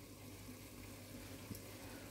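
Faint simmering of a tomato-onion masala in an aluminium pressure cooker: a low, steady hiss with a soft click about one and a half seconds in.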